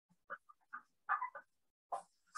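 Marker squeaking on a whiteboard in a handful of short, separate strokes as a word is written.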